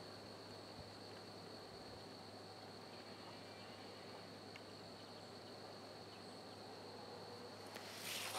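Near silence with only a faint, steady high-pitched trill of insects.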